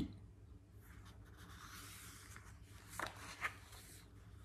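A page of a hardcover picture book being turned: quiet paper rustling, with two short, louder rustles about three seconds in.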